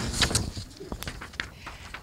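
Handling noise from papers and a handheld microphone being picked up at a desk: scattered light knocks and rustles, with faint voices in the room.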